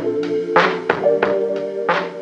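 Background music: held chords over a drum beat.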